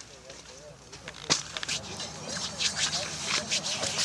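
Low, quiet voices with scattered short crackling rustles that pick up about a third of the way in.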